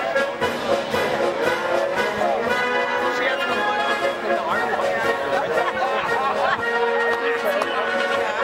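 A brass band playing a march, with people talking over it.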